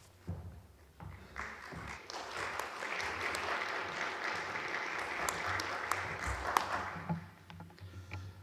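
Audience applauding, the clapping building about a second and a half in and dying away near the end.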